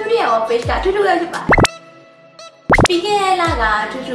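A woman talking over background music, broken by quick rising 'bloop' pop sound effects, two of them about a second apart around the middle, with a brief lull between.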